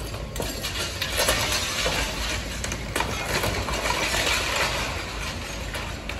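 Concrete and rubble crunching and clattering down as a high-reach demolition excavator breaks up a building. A dense run of sharp knocks and clinks over a low rumble swells about a second in and eases off near the end.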